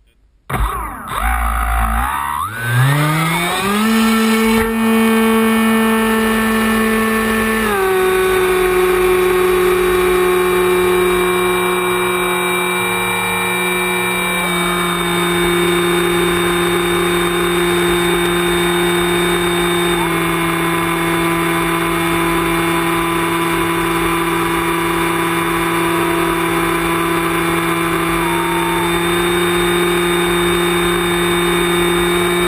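Model aircraft's motor and propeller spinning up with a rising whine over the first few seconds, then running steadily in flight. The pitch steps down a little about eight seconds in and again around fifteen seconds.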